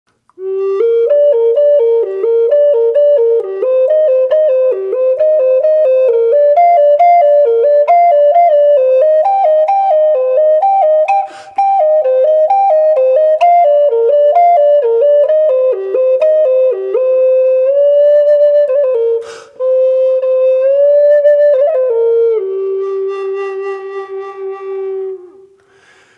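G minor Native American flute playing the four-chord warmup: quick runs of short notes stepping up and down, with two brief pauses for breath. It ends on a long held low note that fades away.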